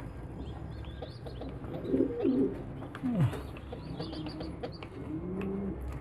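Pigeons cooing: about four short low calls, one of them sliding steeply down in pitch, with faint high-pitched peeps in between.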